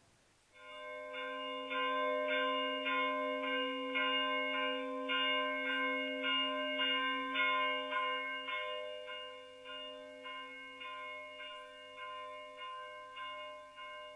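A church bell struck rapidly and repeatedly, a few strokes a second, its tone ringing on between strokes. It grows slowly fainter in the second half.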